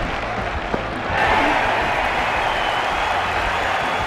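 Cricket crowd applauding and cheering, swelling louder about a second in and then holding steady.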